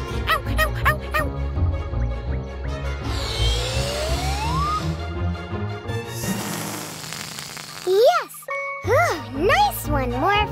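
Children's cartoon background music with sound effects: a long rising glide in pitch around the middle, then a hiss, then swooping, wavering voice-like sounds near the end.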